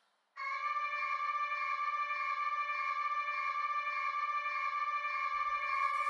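A single sustained musical note, held at one steady pitch with a bright set of overtones, starting about a third of a second in and running on unchanged.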